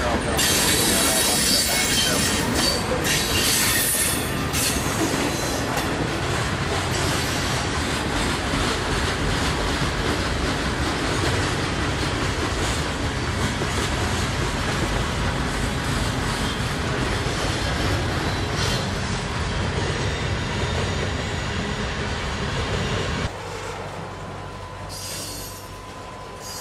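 Freight cars rolling past: steel wheels running on the rails with a steady rumble and some wheel squeal. The sound drops suddenly to a quieter level near the end.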